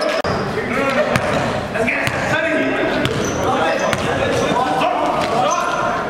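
Basketball game sound in a gym: the ball bouncing on the hardwood floor, sneakers squeaking and players calling out, echoing in the large hall.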